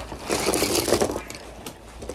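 Rustling and scraping of school supplies being handled on a table: a clear plastic package and loose pencils being shuffled, in a burst of about a second, followed by a few light clicks.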